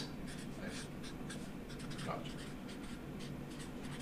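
Faint handwriting: a pen scratching over a writing surface in short, repeated strokes.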